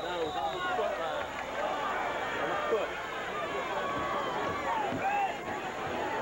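Spectators at a football game chattering and shouting, many voices overlapping into a steady crowd din with no single clear voice.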